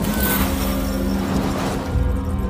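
Car driving on a snowy road: steady tyre and road noise over a low engine rumble, with a steady low drone held underneath.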